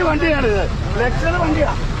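Voices talking over a steady low rumble of vehicle noise.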